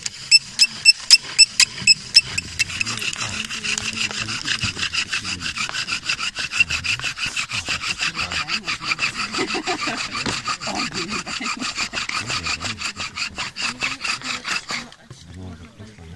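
Bow drill: a wooden spindle spun back and forth by a corded bow in a wooden hearth board, giving a squeaky rubbing on every stroke. The strokes start slowly and then settle into a fast, steady rhythm, stopping about a second before the end. The friction is heating the wood dust toward smoke and an ember.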